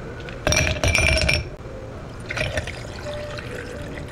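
Ice cubes dropped into a tall cut-glass tumbler, clinking against the glass for about a second, then water poured over the ice, running quietly into the glass.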